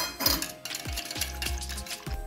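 Wire balloon whisk beating thick yogurt in a stainless steel bowl, its wires clicking and scraping against the metal in quick, irregular strokes.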